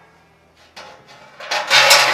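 Steel rebar rods sliding through the holes in the steel drum of a Pit Barrel Junior: metal scraping and clanking in short bursts, loudest near the end.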